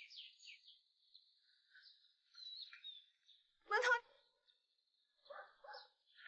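Small birds chirping and twittering in quick, high short notes, with one louder call just before the four-second mark and two short calls near the end.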